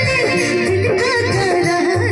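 A woman singing a Bhojpuri-style song into a microphone, accompanied by dholak drum beats and an electronic keyboard.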